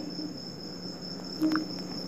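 Steady high-pitched background whine, with a faint low hum under it and one brief short sound about one and a half seconds in.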